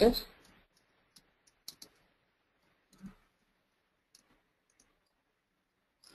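Computer keyboard keystrokes, faint and irregular: about eight separate clicks spread over a few seconds as a word is typed.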